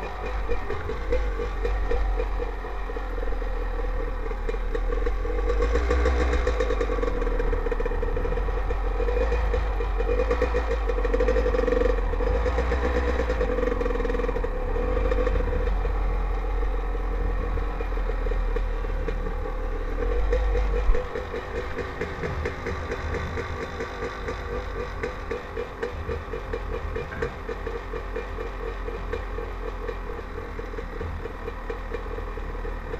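Dirt bike engine running under way, heard from a helmet-mounted camera, its rapid firing pulse steady throughout. A heavy low rumble and the overall loudness drop away about two-thirds through, just after a brief loud knock, leaving a quieter, even engine note.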